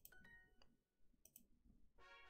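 Near silence: room tone, with a couple of faint computer-mouse clicks a little past the middle.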